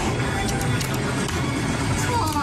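Audio of a surveillance-camera recording in a slot-machine hall: electronic slot-machine music over a dense, noisy room background, with a few light clicks.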